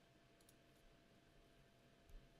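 Near silence: quiet room tone with a faint computer mouse click about half a second in.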